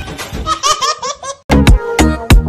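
A quick run of high-pitched laughter, in short rapid pulses, for about a second and a half. It breaks off, and loud music starts near the end, with deep sustained bass notes and sharp drum hits.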